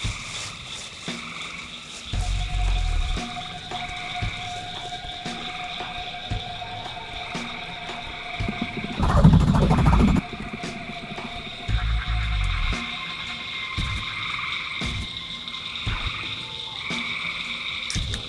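Night chorus of frogs and insects, a steady high trilling throughout. It is broken by a few low, heavy bursts, the loudest a dense rumbling one about nine seconds in that lasts about a second.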